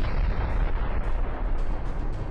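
Large explosion of a tactical ballistic missile's warhead: a deep, sustained rumble with crackling noise, continuing from a sudden blast just before.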